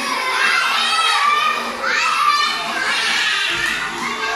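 Many young children's voices, loud and high-pitched, calling out and chattering together in a classroom, over a children's song.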